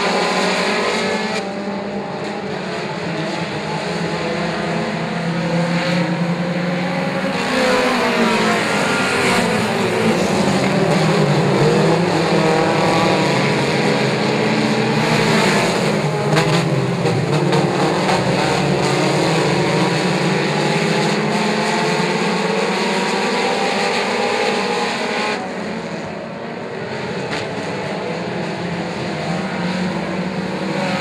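A pack of four-cylinder mini stock race cars running at racing speed on a dirt oval, several engines droning together. Their engine notes slide down and climb back up around the middle, as the cars go through a turn and accelerate out.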